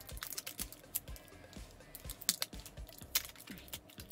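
Stiff plastic hologram sheet crinkling in irregular clicks and crackles as fingers fold its edges over the rim of a button-badge shell.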